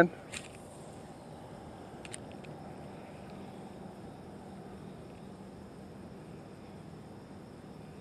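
Quiet outdoor ambience: a faint steady hiss with a low hum underneath, and a couple of faint ticks shortly after the start and about two seconds in.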